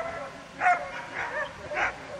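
Belgian Tervuren barking during an agility run: three short yips about half a second apart.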